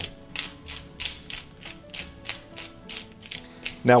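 Handheld spice grinder being twisted, its grinding mechanism giving a run of rapid, even clicks, several a second, with the top set up for a coarse grind.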